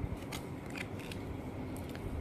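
Tarot cards being handled: a card is drawn from a spread deck and laid down, giving a few faint crisp clicks of card against card.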